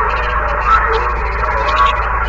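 Radio receiver on the 27 MHz CB band putting out loud, steady static with faint wavering tones of a weak signal buried in the noise, over a low hum.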